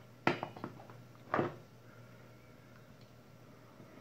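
A sharp click followed by a few lighter clicks, then a short scrape about a second later: small hard objects being handled and set down on the workbench.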